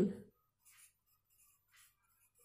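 A pen writing on a workbook page: faint, short scratching strokes as the words are written out.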